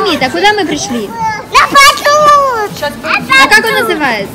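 High-pitched voices of young children babbling and calling out, with a louder, rising-and-falling call about halfway through.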